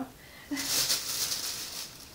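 Plastic bag rustling and crinkling for about a second and a half as things are handled in it.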